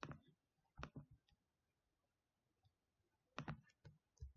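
Faint clicks of a computer mouse, a few scattered ones: one at the start, two about a second in and a quick cluster near the end, with near silence between.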